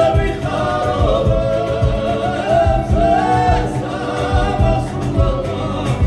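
A Georgian folk ensemble singing together in several parts, the voices holding and sliding between notes over a regular low beat.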